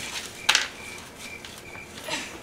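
Spilled slushy being wiped off a wooden floor with a paper towel: faint rubbing with a few short, irregular high squeaks, and one sharp click about half a second in.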